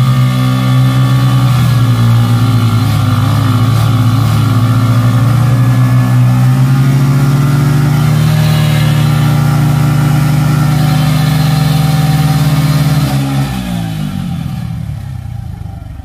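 Two small single-cylinder commuter motorcycles, a Hero HF Deluxe and a Bajaj 100 cc, held at high revs under load while they pull against each other on a tow rope. The engines run loud and steady, then drop back to idle when the throttles close about 13 seconds in.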